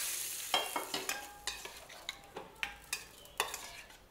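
Hot oil tempering sizzling in a steel bowl and dying away over the first second, while a metal spoon scrapes and taps against the pan and bowl in about a dozen sharp clicks.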